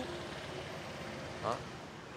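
Steady low background noise with no clear source, and one short voiced syllable from the man about one and a half seconds in.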